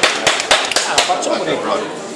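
A few people clapping: a quick run of sharp claps through the first second that fades out, over background voices.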